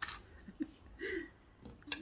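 A few light clicks and taps of tableware: a spoon and a small plastic sauce cup handled over a plate, with a quiet stretch between the clicks.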